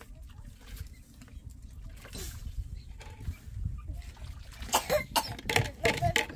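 A few sharp coughs about five seconds in, over a low steady rumble.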